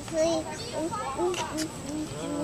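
A toddler's high-pitched voice, babbling and talking in unclear words.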